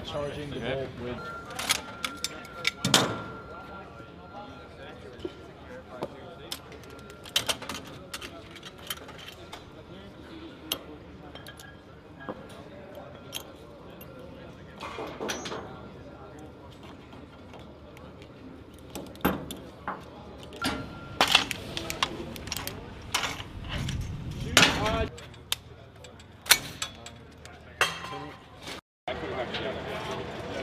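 Metallic clicks and clacks of machine-gun parts being handled and fitted together, scattered through with a few louder knocks.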